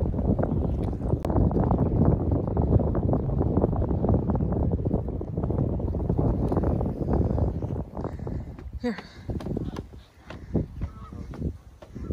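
Gusty wind buffeting the microphone, a dense low rumble that dies away about two-thirds of the way through, leaving quieter outdoor air and a brief spoken word near the end.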